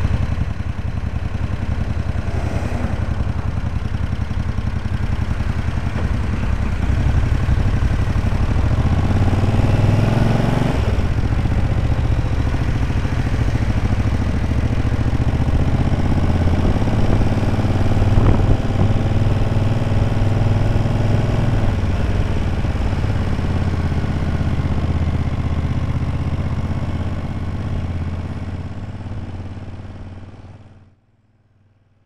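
Honda CX500 V-twin motorcycle engine running at low speed in slow town traffic, with the revs rising and falling about ten seconds in. The sound fades out near the end.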